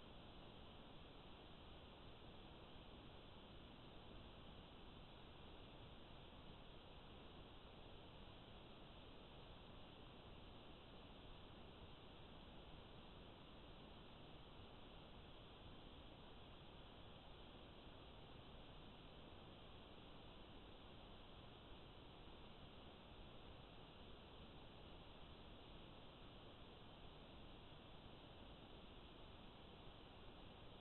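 Near silence: a faint, steady hiss with nothing else happening.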